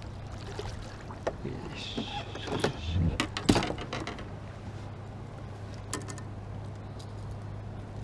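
Largemouth bass being scooped into a landing net beside a boat: a cluster of splashes and knocks, loudest about three and a half seconds in, over a steady low hum.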